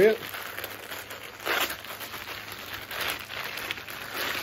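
A clear plastic bag crinkling in the hands as the T-shirt inside is handled and pulled open, in several separate rustles, the loudest about a second and a half in.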